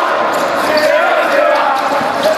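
A group of young basketball players shouting and chanting together in a celebration huddle, many voices overlapping without pause.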